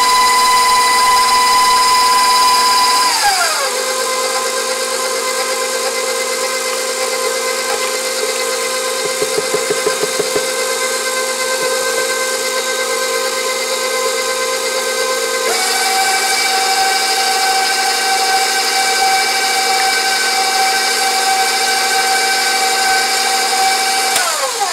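Electric stand mixer's motor whining steadily as its wire whisk beats whipping cream into a cream-cheese frosting. The pitch drops about three seconds in and steps up again past the halfway point as the speed changes.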